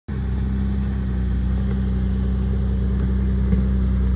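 Jeep LJ's 4.0-litre inline-six engine running steadily at low revs in low-range crawl gearing, a constant low drone with no revving.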